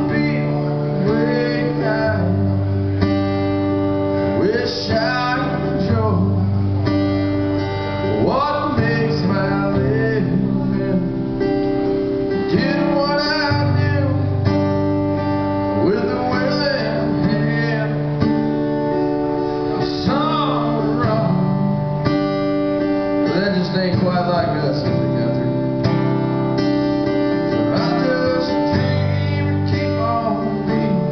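Live acoustic country song: an acoustic guitar strummed steadily through changing chords, with a singing voice over it.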